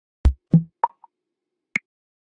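A few short, sharp percussive hits in quick succession, each higher in pitch than the one before. A last, higher click comes near the end.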